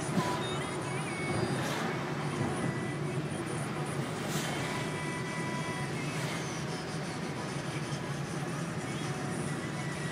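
Car cabin noise while driving: a steady engine hum and tyre noise heard from inside the car, with a few brief knocks.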